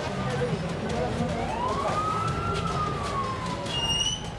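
A siren wailing: one slow rise in pitch over about a second, then a long, slow fall, over a low throbbing background. A short high chirp comes near the end.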